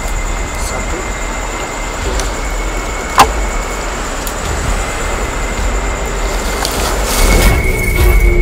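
A steady loud rumbling noise with a faint high whine running through it, one sharp click about three seconds in, swelling louder near the end.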